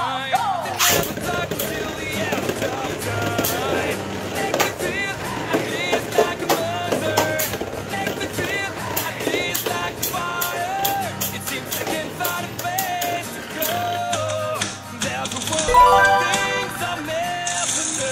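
Background pop song with singing, over Beyblade tops spinning and clashing in a plastic stadium, with frequent irregular sharp clicks as they hit.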